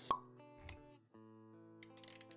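Intro music with a sharp pop sound effect right at the start and a softer low thump just after. The music breaks off briefly about a second in, then its held notes start again.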